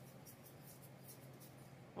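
Faint, dry ticking of salt being shaken from a salt shaker onto cut mango.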